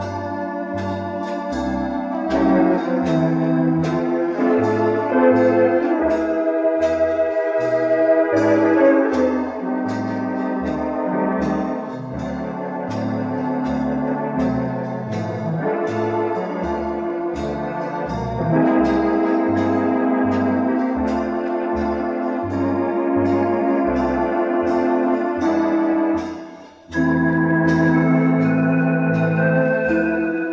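Artisan electronic theatre organ playing a ballad: held chords with a wavering vibrato over a pedal bass stepping about two notes a second. Near the end the piece stops for a moment and another tune begins.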